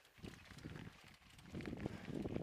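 Irregular crunching steps on a loose rocky gravel trail during a descent. About one and a half seconds in, a louder low rumble joins them, like wind or handling on the microphone.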